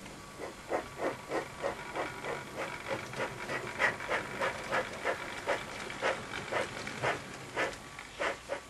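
Steam locomotive chuffing steadily, about three puffs a second, as an engine approaches, with a faint steady high whine underneath.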